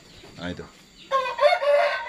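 A rooster crowing once, starting about a second in and lasting about a second; it is the loudest sound here.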